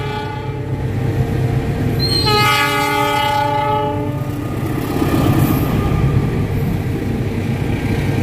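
Diesel locomotive of a through express train sounding its horn for about two seconds, a chord of several steady notes, as it approaches. It then passes at speed with a heavy rumble of locomotive and carriages, over the low steady idle of a standing diesel locomotive close by.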